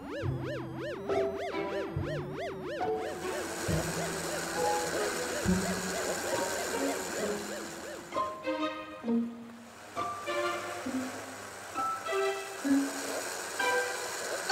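Light cartoon background music with plucked and bowed strings playing a melody. For the first three seconds a warbling sound effect rises and falls about three times a second over the music.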